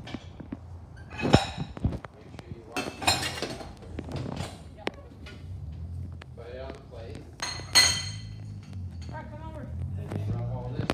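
Plates and cutlery clinking and knocking on a kitchen counter, with a few sharp, ringing clinks, amid short bursts of voices.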